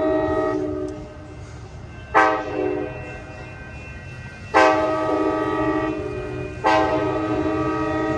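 Amtrak San Joaquin locomotive's multi-chime air horn blowing a series of loud blasts as the train approaches: one ending about a second in, a short blast about two seconds in, then a long blast and another that is still held at the end. A low steady rumble runs underneath.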